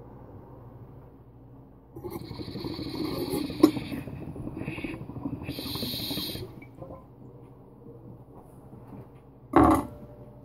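Water bubbling through a glass dab rig as a hit is drawn, starting about two seconds in and stopping after about four and a half seconds, with a sharp glass clink partway through. A short loud sound near the end.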